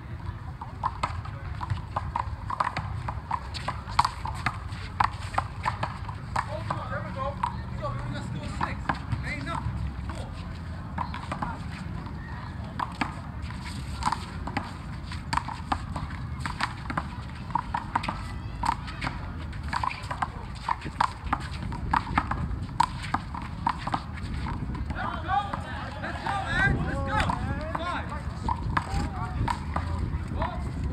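Rubber handball struck by hand and smacking off a concrete wall and pavement in quick rallies of sharp, irregular slaps, with players' and onlookers' voices underneath, louder near the end.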